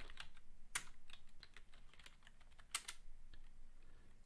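Computer keyboard typing: a quick run of faint key clicks, with two sharper keystrokes, one a little under a second in and one near three seconds.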